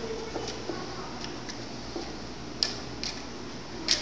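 A wooden match struck against the striker strip of a matchbox: a short scrape about two and a half seconds in, then a louder scrape near the end as it catches alight, with faint ticks of small handling sounds between.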